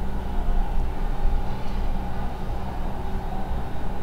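A steady low rumble with no distinct events.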